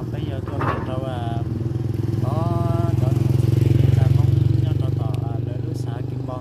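A motorcycle engine passing nearby, its low hum growing louder to a peak about four seconds in and then fading.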